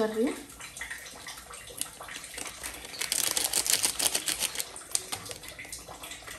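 A foil spice packet crinkling as it is shaken and tapped to pour masala powder into a pot. The crinkling turns into a dense burst of fine crackling about three seconds in, lasting over a second.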